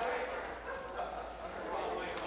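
Many overlapping voices in a legislative chamber, members calling out and talking over one another: heckling that is loud enough that the Speaker calls the house to order moments later.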